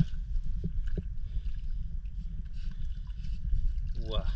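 Low, steady rumble of water and handling noise on an action camera held at the surface of a shallow tide pool, with two faint ticks about half a second and a second in.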